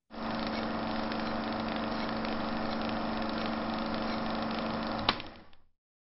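A steady mechanical hum with a constant low tone, lasting about five seconds and ending with a click.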